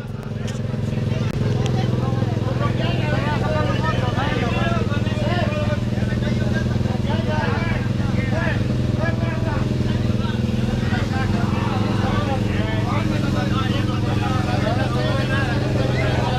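A motorcycle engine idling steadily under the chatter of many people talking at once.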